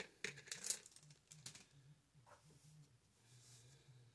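Faint taps and clicks of small wooden egg cutouts being set down on a paper plate, a few in the first second and a half, then near silence.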